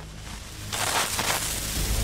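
Hydrogen peroxide and hydrazine igniting on contact in a miniature rocket motor: a sudden rushing hiss bursts out about two-thirds of a second in, then carries on as a steady rushing noise. A violent, explosive hypergolic reaction.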